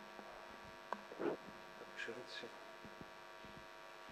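Steady electrical mains hum from the microphone and sound system, with a sharp click about a second in and a few short faint sounds after it.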